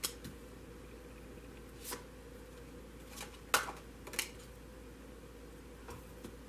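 Tarot cards being dealt one at a time onto a hard tabletop: a few short taps and slaps about a second apart, the loudest about three and a half seconds in.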